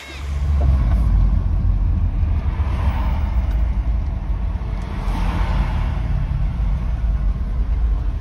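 Steady low rumble of a moving car heard from inside the cabin: road and engine noise, starting suddenly at the cut.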